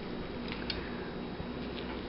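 Faint soft clicks and tearing of ugli fruit peel and pith as fingers pull the segments apart, over a steady low room hum.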